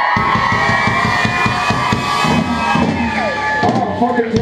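Live rock band playing loud, with drums hitting fast under a long held high note. The music thins out near the end.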